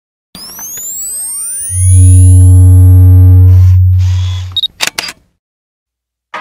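Designed intro sound effects: rising sweeps, then a loud, deep steady bass tone lasting about three seconds, then a few sharp camera-shutter clicks about five seconds in.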